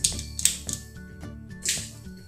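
Soft background music, with a few light clicks and a short scrape as a loom hook pushes rubber bands down a plastic Rainbow Loom peg; the sharpest click comes about half a second in.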